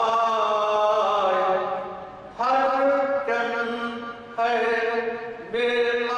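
A man chanting verse melodically into a microphone, holding long, steady notes in short phrases with brief breaths between them.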